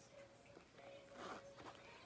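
Near silence, with faint handling of denim jeans as the fly is undone, and a faint steady hum underneath.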